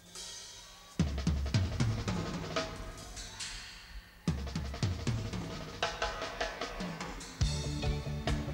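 Live drum kit playing a song's opening: busy runs of bass drum, snare and cymbal strokes starting about a second in and again about four seconds in. Low bass notes come in near the end.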